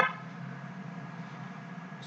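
Steady low background hiss and hum of the recording's noise floor, with no distinct sound events.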